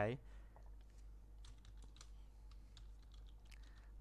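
Faint clicks of computer keyboard keys, about ten quick keystrokes starting about a second and a half in, typing a short terminal command.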